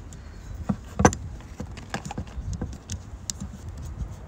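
Scattered small clicks and knocks of a brass valve fitting being handled, pushed and twisted into place by hand, the loudest about a second in.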